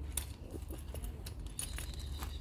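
Metal buckles and hardware of a climbing safety harness clinking and jingling in short, irregular clicks as the harness is handled and fitted around a person's legs.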